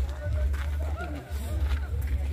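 People talking, the voices faint and partly overlapping, over a steady low rumble that drops out briefly a little after a second in.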